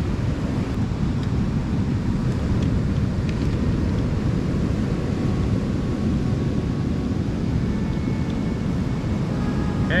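Steady low outdoor rumble, heaviest in the bass. A few faint clicks come in the first few seconds as a Bronica camera is fitted onto a tripod's mount.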